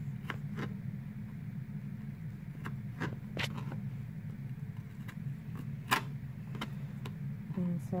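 Knife cutting apple on a plastic tray: scattered sharp clicks and taps, the loudest about six seconds in, over a steady low hum.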